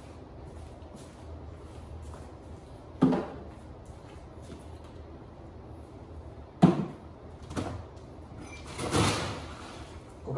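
A door being opened and shut: a sharp bang about three seconds in, two more knocks a little before the eight-second mark, then a longer sliding rush about nine seconds in.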